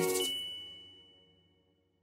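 The final note of a short musical outro jingle: a closing chord with a high bell-like ding that rings on and fades out within about a second.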